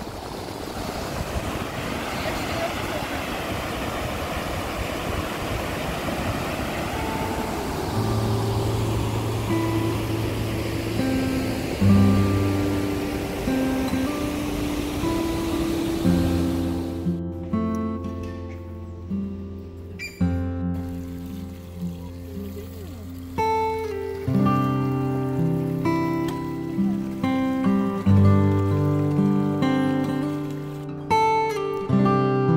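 Steady rushing of a waterfall, with acoustic guitar background music fading in about eight seconds in. The water sound cuts off about seventeen seconds in, leaving only the guitar music.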